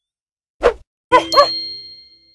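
Logo sting sound effect: a short thump, then two quick pitched notes about a second in, joined by a bright bell-like ding that rings out and fades.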